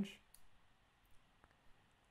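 A few faint, short computer mouse clicks over near-silent room tone.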